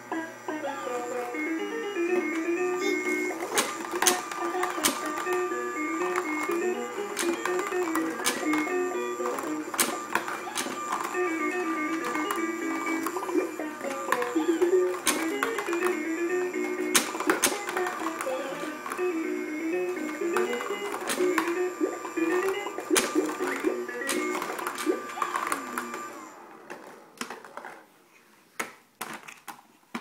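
Electronic tune playing from a baby's plastic ball-drop spiral ramp toy, with plastic balls clicking and clattering down the ramps. The tune stops near the end, leaving only a few clicks.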